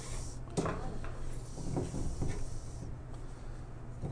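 Handling noises of a perforated metal basket and ribbon on a wooden counter: a few soft knocks and a brief rustle as the ribbon is threaded through the basket's holes.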